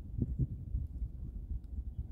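Low, uneven rumble of wind on the microphone, with two soft thumps shortly after the start.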